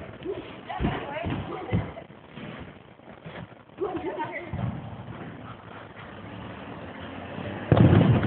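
Fireworks going off: a few dull booms in the first two seconds, then a much louder boom near the end.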